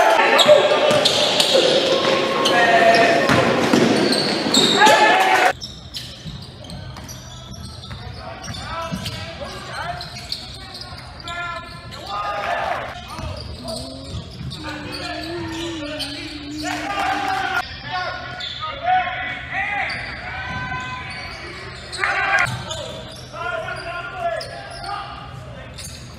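Sounds of a basketball game in a gymnasium: a basketball bouncing on the hardwood court amid shouting and chatter from players and spectators, echoing in the hall. The first five seconds or so are louder; then the level drops suddenly to a quieter, more distant recording with a steady low hum beneath the voices and bounces.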